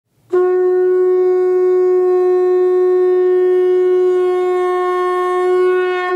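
One loud, long blown note at a single steady pitch, rich in overtones. It starts just after the beginning and is held without wavering.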